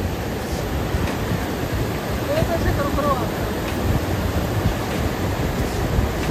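Fast mountain river rushing over boulders: a steady, loud wash of whitewater noise. A short spoken word cuts in about three seconds in.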